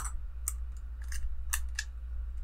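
Several light, irregular clicks of small armor pieces being popped off the chest of a Hot Toys Iron Man Mark V sixth-scale figure.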